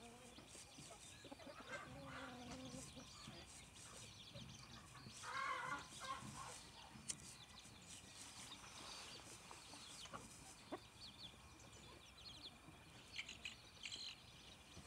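Rooster giving a short clucking call about five seconds in, with a fainter call earlier, against quiet yard background. Faint high chirps near the end.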